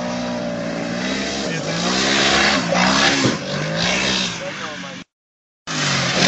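Polaris RZR side-by-side's engine running hard in sand, its pitch rising and falling several times as the throttle is worked, with a hiss of noise over it. The sound cuts out completely for about half a second near the end.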